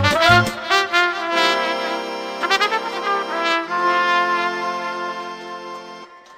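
Moldovan folk party tune played by a trumpet-led band: fast trumpet runs over a drum beat, then the drums stop and the band holds long final chords that fade out near the end as the piece closes.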